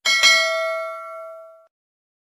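Notification-bell ding sound effect, marking the bell icon being switched on: struck twice in quick succession, then ringing out and stopping abruptly after about a second and a half.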